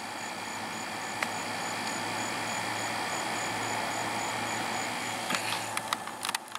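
Steady background hum and hiss, with a faint high pulsing tone over it. A soft click comes about a second in and a few more near the end.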